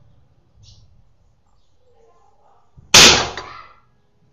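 A single sharp crack about three seconds in as a .22 air rifle fires and its slug strikes the stacked lead plates, knocking them over; the impact rings and clatters briefly before dying away.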